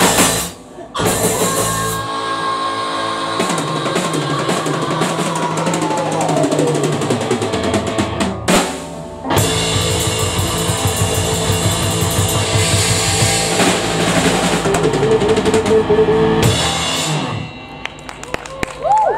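Live rock band playing the instrumental close of a song on electric guitar, bass guitar and drum kit, with two brief full stops and a long held note that slides down in pitch. The drums and cymbals keep driving until the band stops near the end, leaving a short ring-out.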